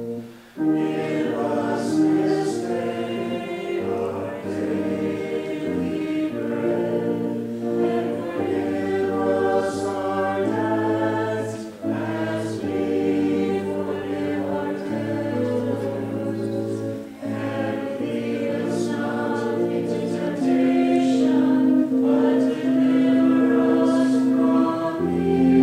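Church choir singing in parts, with sustained chords and sung words throughout. The singing breaks off for a moment just after the start, then carries on.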